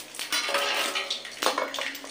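Steel kitchen bowls and containers being handled: irregular clinking and scraping, with a couple of sharper knocks, one near the start and one past the middle.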